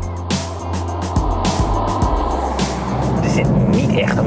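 Volvo V90 estate approaching and driving past, its engine and tyre noise building toward the end, over background music with a beat.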